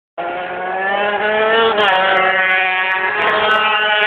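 British Superbike racing motorcycles at full throttle down the straight, the engine note climbing steadily in pitch, with a break in pitch just under two seconds in.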